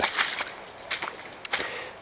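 Footsteps on wet, muddy forest ground, with a brief hiss at the start and a few short, sharp clicks as the feet land.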